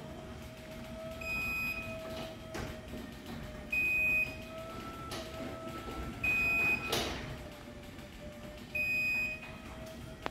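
Chamberlain C2212 garage door opener closing the door on battery backup: a steady motor whine, with a high beep about every two and a half seconds that signals the opener is running on battery power. One sharp clunk about seven seconds in.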